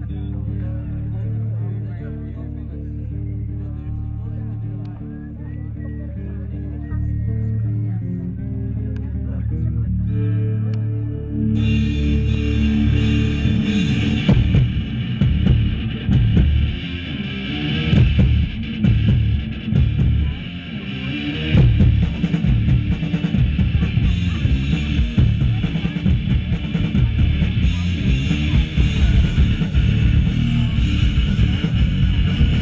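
Live rock band playing a progressive song. It opens quietly with held low notes that step in pitch, then about twelve seconds in the drums, bass and electric guitars come in together and the sound gets louder and fuller.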